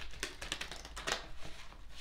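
A deck of tarot cards being shuffled by hand: a quick, irregular run of light clicks and flicks as the cards slide and snap against each other, one a little louder about a second in.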